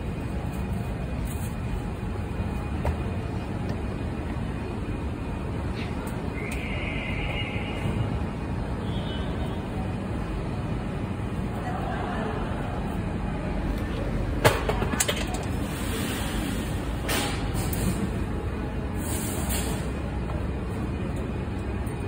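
Car assembly-line factory ambience: a steady low machinery rumble, with a short hiss about six seconds in and a few sharp clicks and hisses in the second half.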